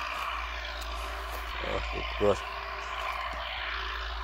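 Steady drone of a distant engine that holds its pitch, with one short spoken word a little after halfway.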